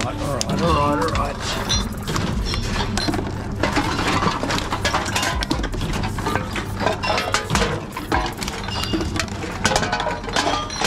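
Glass bottles and cans clinking as they are handled and fed into reverse vending machines, with the machines' intake mechanisms running, over a steady low hum.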